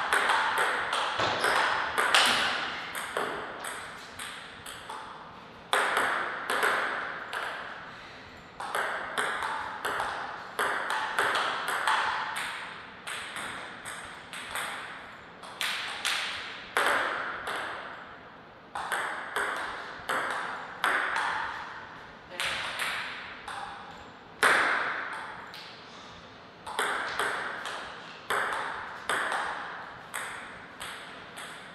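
Table tennis ball clicking back and forth off the rackets and the table in a series of rallies, with short pauses between points. Each sharp hit echoes briefly, as in a large hall.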